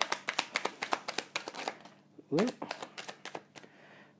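A deck of tarot cards being shuffled by hand to draw a clarifier card: a quick run of crisp card snaps for about two seconds, then sparser flicks after a pause.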